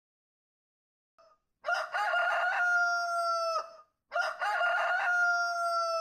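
A rooster crowing twice in a row, each crow a long call of about two seconds.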